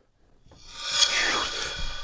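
Old wooden floorboards scraping and creaking, starting about half a second in and loudest around one second, with a short falling squeak in the middle.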